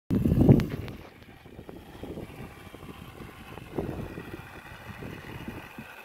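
A horse drinking from a water tank, with irregular soft gulps and slurps under low rumbling wind noise on the microphone. A loud low rumble on the microphone fills the first second.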